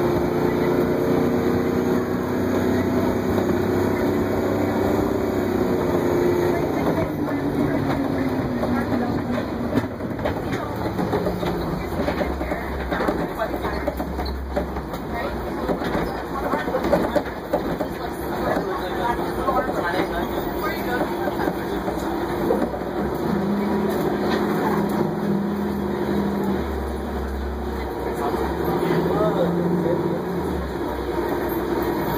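Crown Supercoach Series 2 school bus on the move, heard from inside the cabin: engine and drivetrain running, with a whine that falls in pitch about six to nine seconds in, then a deeper drone.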